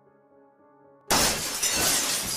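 A sudden loud crash about a second in, with a long noisy tail, over faint steady background music.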